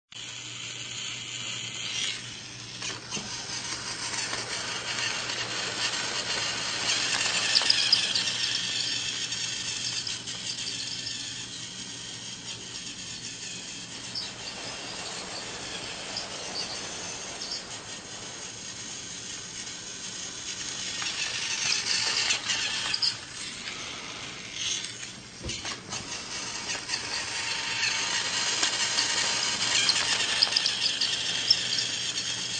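Battery-powered toy train running on plastic track: a high-pitched motor whir with rattling, growing louder twice, about a quarter of the way through and again about three quarters through.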